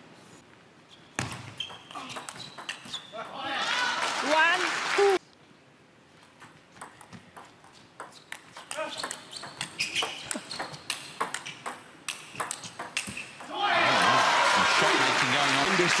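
Table tennis ball clicking off bats and table during rallies, with a short burst of crowd shouting after the first run of hits. Near the end a second rally gives way to loud crowd cheering and applause.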